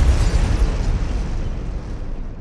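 Cinematic boom sound effect of a logo sting: the noisy tail of a deep hit, fading slowly.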